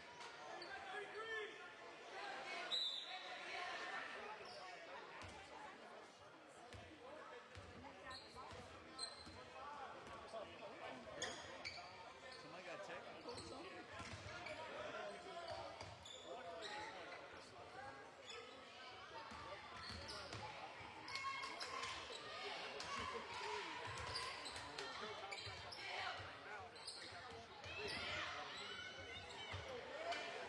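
A basketball being dribbled on a hardwood gym floor, a series of short bounces heard over steady spectator chatter in a large gym.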